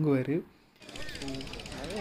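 Brief speech, a short cut to near silence, then a steady, fast mechanical rattle from a running machine under faint voices in a busy market.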